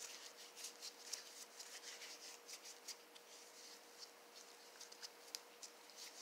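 Faint rubbing and scratchy ticking of disposable-gloved hands working between the palms, over a faint steady hum.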